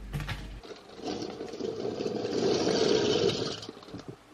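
Elbow macaroni being stirred in a saucepan of water with a spatula: a swishing, scraping noise that builds from about a second in and stops suddenly near the end. A few light clicks come at the start.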